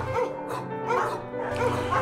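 Background music with a dog giving short barks.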